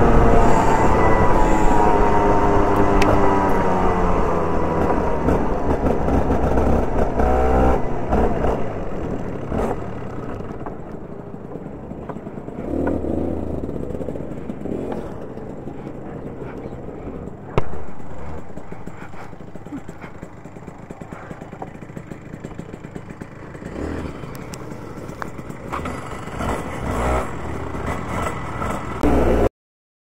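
Rotax Junior Max single-cylinder two-stroke kart engine heard from onboard, its note falling as the kart slows, then running low and rough with clattering from the chassis and one sharp knock past halfway.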